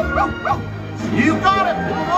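Parade music with a cartoon dog's barks and yips over it, Pluto's voice on the float's soundtrack; the calls come in a short run about a second in.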